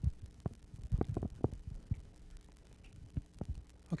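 Several soft low thumps and knocks, most of them in the first two seconds, over a steady low electrical hum.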